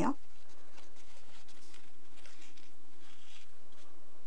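Faint soft scratching and rustling of a sewing needle and thread being drawn through a fluffy microfiber-yarn knitted coaster and a fabric label, with a few brief scratchy strokes.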